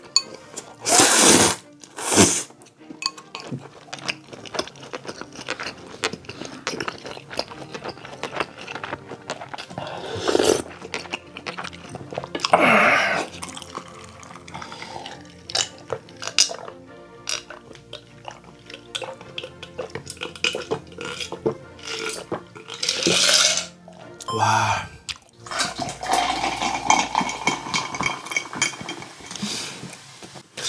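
Close-miked eating sounds: loud noodle slurps in the first couple of seconds, then chewing and mouth noises, with further loud slurps and swallows of a fizzy cola drink spread through, over quiet background music.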